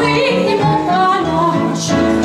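A song performed live: a singing voice carrying a melody over electronic keyboard accompaniment.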